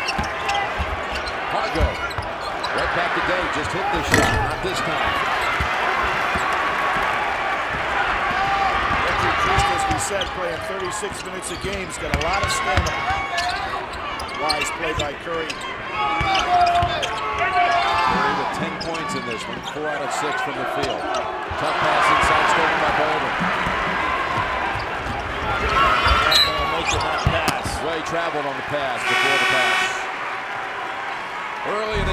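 Arena sound of a live basketball game: crowd noise with a basketball being dribbled on the hardwood court. A brief buzzing tone near the end.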